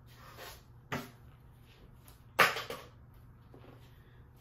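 Objects being handled and set down on a desk: a small knock about a second in, then a louder, sharp knock a little past halfway.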